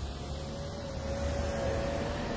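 Low outdoor rumble of distant street traffic, with a faint steady hum that rises slightly in pitch over the two seconds.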